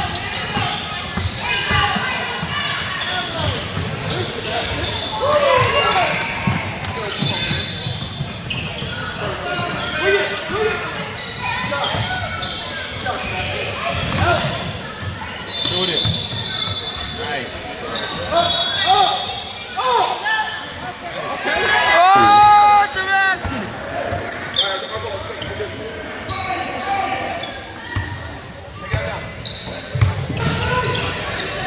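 A basketball being dribbled and bouncing on a hardwood gym floor during a game, among players' and spectators' voices calling out, with one loud shout about two-thirds of the way through. Everything echoes in a large gym hall.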